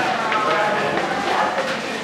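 Overlapping chatter of several people talking at once, a busy indoor murmur with no single clear voice.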